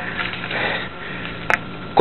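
A hiker's breathing while walking the trail, over a steady hiss, with one short click about a second and a half in.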